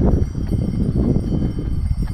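A distant horse pulling a sleigh along a snowy road, its hooves making faint clip-clops under a steady low rumble.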